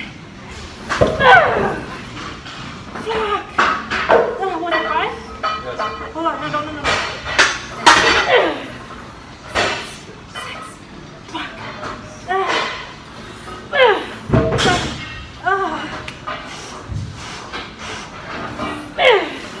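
A woman grunting and groaning with strain as she presses a heavy plate-loaded leg press. Her short cries fall in pitch and come every one to two seconds, rep after rep.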